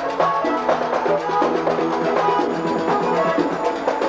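Vallenato music played live: a diatonic button accordion carries a melody of quick, changing notes over steady rhythmic drum and percussion strokes.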